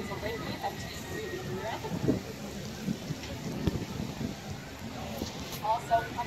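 Indistinct voices of people talking, coming and going over a steady outdoor noise hiss; no words can be made out.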